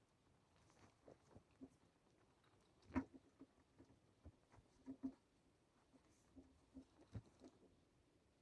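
Faint, scattered knocks and rustles of a rubber fire hose being pulled and looped over a metal hose rack, with the loudest knock about three seconds in and others about five and seven seconds in.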